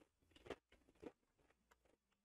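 Faint chewing of Pringles potato crisps: three soft crunches about half a second apart in the first second, then near silence.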